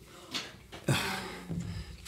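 Playing cards being thrown and handled: a light click, then just before a second in a louder brief rustle that dies away.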